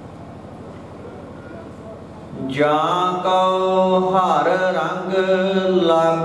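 Gurbani kirtan (Sikh hymn singing) by a man's voice over a sound system: a short lull, then about two and a half seconds in the singing starts again with a long held note and carries on.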